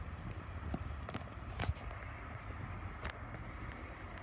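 Outdoor background with a low, uneven rumble of wind on a handheld microphone and a few faint clicks and taps from handling.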